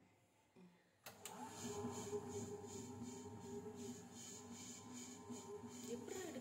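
Butterfly Rhino Plus wet grinder running, its drum and stones grinding batter with the lid closed. A faint steady hum with a regular swish a little over twice a second, coming in about a second in.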